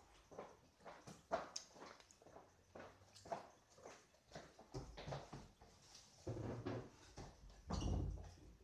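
Scattered light knocks and taps, with low bumps building in the second half as a kitchen cupboard door is opened near the end.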